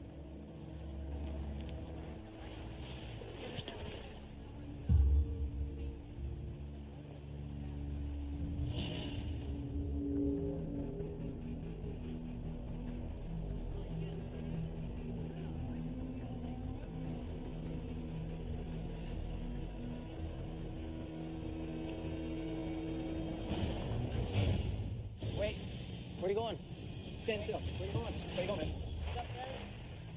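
Tense documentary background music with long held low notes. A single thump comes about five seconds in, and voices are heard faintly near the end.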